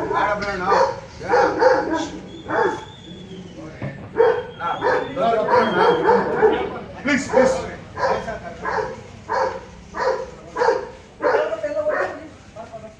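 Several men arguing in raised voices, with a dog barking repeatedly. Near the end come quick, evenly spaced barks.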